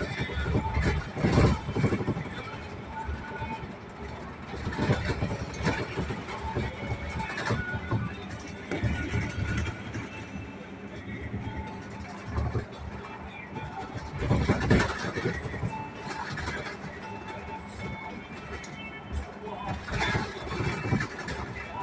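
Cabin noise inside a moving bus: engine and road rumble with music and voices playing over it, and a few louder rattles or thumps along the way.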